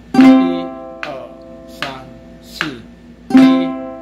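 Ukulele strummed once down across all four strings and left to ring for four counted beats, then strummed again: whole-note strumming. Faint clicks mark the beats in between.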